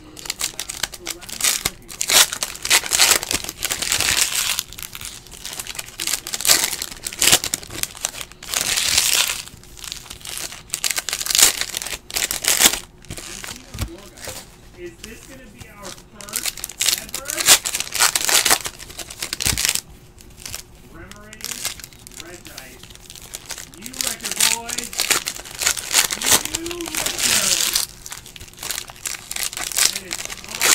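Shiny foil trading-card pack wrappers crinkling in repeated irregular bursts as packs are pulled open by hand.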